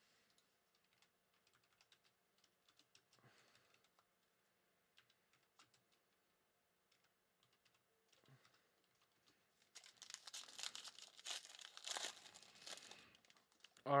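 Faint scattered clicks of handling, then from about ten seconds in a Mosaic Euro trading-card pack's foil wrapper crinkling and tearing as it is ripped open.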